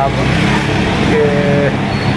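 Steady low hum of motor-vehicle traffic, engines running continuously.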